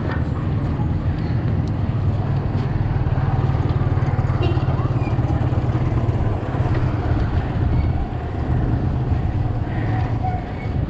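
Wind buffeting the microphone of a camera riding on a moving bicycle, a loud steady low rumble, with tyre noise from rolling on a concrete road.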